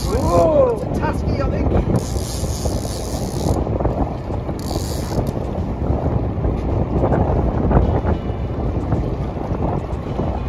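Wind buffeting the microphone over the steady rumble of a boat on choppy sea. A short pitched exclamation comes about half a second in, and two bursts of high hiss follow, around two and five seconds in.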